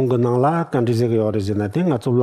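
Speech only: a man talking in Tibetan, delivering a teaching.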